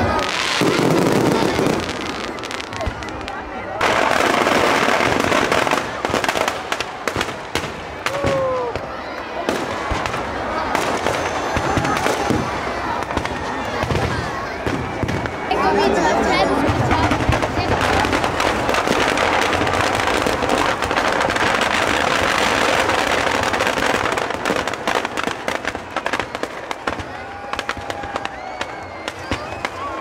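Fireworks and firecrackers going off around burning Dussehra effigies, a dense run of crackles and bangs over the voices of a large crowd.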